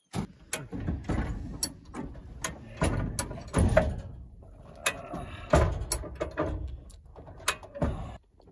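Hi-Lift farm jack being pumped, its ratchet clacking with each stroke, roughly one to two clacks a second, over low scraping and knocking as it raises the off-road vehicle.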